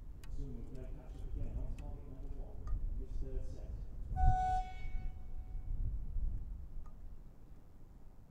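A single horn tone about four seconds in, loud and steady for about half a second and then fading: the timing signal that starts an archer's shot clock in an alternating-shooting match. Faint voices are heard before it.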